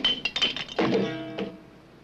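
Cartoon sound effects of junk dropping out of a trash can: a quick run of thunks and clinks, then a short held musical note about a second in.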